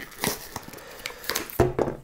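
Cardboard packaging being torn open, its sticky tabs ripping and the card crinkling in a run of short crackles. A heavier thud comes near the end.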